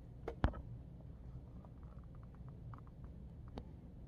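Quiet room with a few small clicks and taps from handling, the sharpest about half a second in, and a run of faint ticks through the middle.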